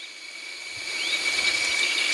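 Outdoor background ambience: a steady hiss with a thin high tone, growing louder, and a faint bird chirp about halfway through.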